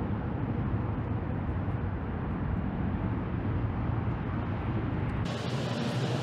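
Steady low outdoor rumble. About five seconds in it gives way to a brighter indoor background noise.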